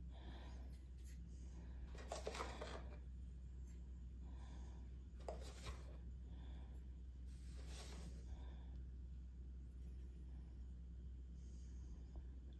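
Faint, scattered light rustles and small taps of dry instant yeast being spooned onto a tared kitchen scale, over a low steady hum.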